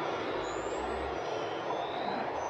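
Airport terminal ambience: a steady mechanical rumble and hum, with faint high squeaks that slide slightly up in pitch about half a second in and again near the end.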